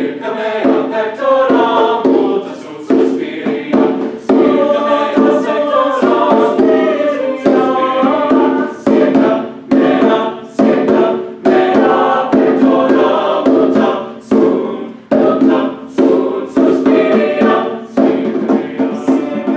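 Mixed choir singing a lively, rhythmic piece, accompanied by hand drums with short sharp strokes that come and go through the singing.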